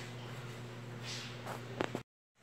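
Low steady hum of room tone, with a soft brief hiss about a second in and two sharp clicks near the end.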